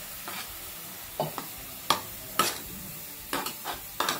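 Steel ladle stirring a thin leafy curry in a kadhai, with about eight short scrapes and knocks of the ladle against the pan over a steady sizzle of the simmering curry.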